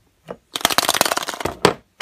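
Hollow plastic toy egg being picked up and handled among other plastic eggs and figurines: a rapid clatter of plastic clicks lasting about a second, then a few single sharp clicks.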